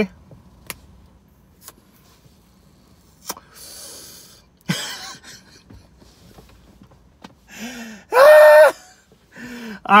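A man eating KFC Secret Recipe Fries: faint mouth clicks of chewing and two brief rustly crunching patches in the first half. Near the end comes a short, high-pitched vocal sound, the loudest thing heard.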